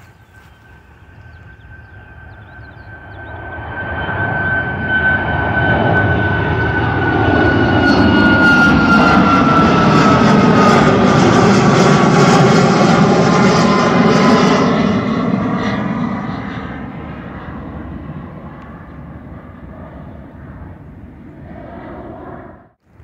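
A jet airliner passing low overhead, its engine noise swelling over several seconds, loudest for a stretch in the middle, then fading as it moves away. A high whine drops in pitch as it goes past.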